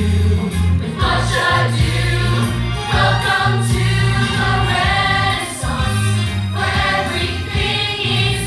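A musical-theatre song with ensemble choral singing over a steady, strong bass accompaniment, playing continuously.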